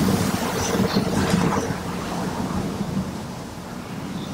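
Rumbling and rustling of people moving and settling in the room, loudest at the start and fading, during the pause between the two parts of a Friday sermon.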